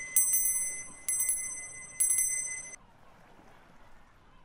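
Tibetan Buddhist hand bell struck three times, about a second apart, each strike ringing on in high, bright tones; the ringing cuts off suddenly about three-quarters of the way through, leaving only faint surf.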